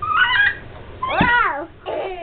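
A small child's high-pitched squeals during play: two squeals that slide up and down in pitch, and a third beginning near the end.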